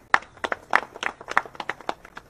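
Scattered hand clapping from a few people, a dozen or so separate, irregular sharp claps that stop near the end.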